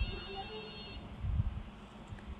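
A phone's electronic alert tone: a cluster of high, steady pitches held for about a second. A soft low bump follows about one and a half seconds in.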